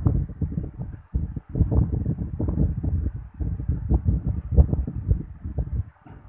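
Air from an electric fan buffeting the microphone: an irregular low rumble with short dips about a second in and just before the end.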